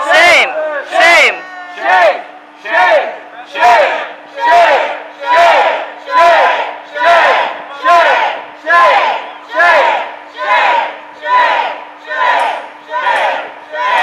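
Protest chanting in a steady rhythm, one loud shouted call a little more often than once a second, over a steady low hum.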